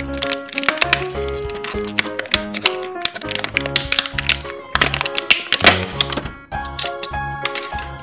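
Clear plastic packaging bag crinkling and crackling in irregular sharp clicks as a plastic transforming robot toy is worked out of it, over background music with a regular bass beat.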